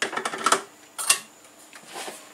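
Kitchenware knocking as a glass bowl of flour is handled against a plastic mixing bowl: a quick rattle of light clicks, then another sharp knock about a second in.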